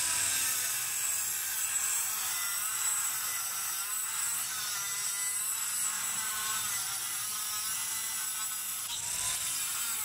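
Angle grinder with a multi-purpose cutting disc cutting through square steel tubing: a steady, high-pitched grinding, its pitch wavering slightly as the load changes.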